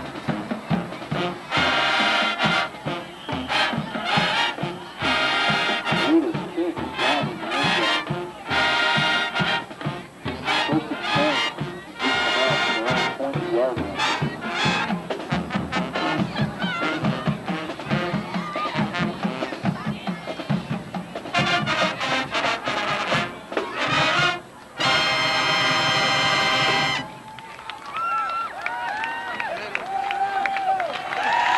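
High school marching band playing a brass-heavy tune, with trumpets, trombones and sousaphones. It ends on a long held chord about 27 seconds in, followed by crowd voices.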